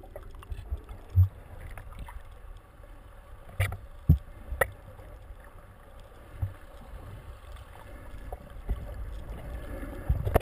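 Muffled underwater sound of moving water, a steady low rumble, with a few sharp clicks about three and a half to four and a half seconds in.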